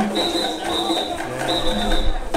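Live band music with singing from a street performance; a high steady tone keeps breaking off and coming back.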